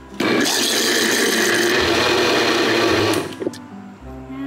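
Countertop electric blender running, mixing burnt cheesecake batter of cream cheese, sugar, cream and eggs; it starts just after the beginning and is switched off about three seconds in.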